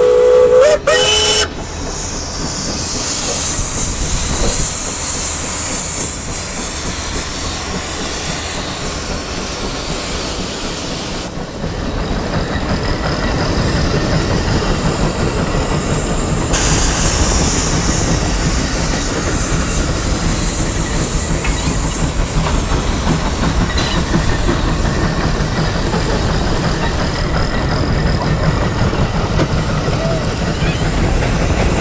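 The 150 Case steam traction engine working under load on the plow: its whistle sounds briefly at the start, then a steady rapid chuffing from the stack with hissing steam.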